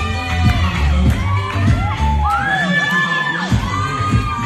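A group of girls cheering and whooping with long, high, rising-and-falling shouts over dance music with a heavy bass beat. The beat drops out for about a second near the end while the shouts carry on.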